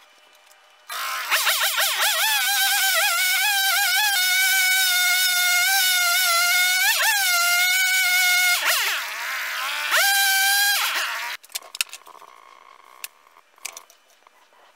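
Two-stroke petrol chainsaw running, revved up and down at first, then held at high revs while it cuts into a block of wood. Its pitch sags a few times under load before it stops abruptly.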